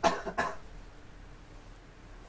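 A person coughing twice in quick succession, two short sharp coughs close together.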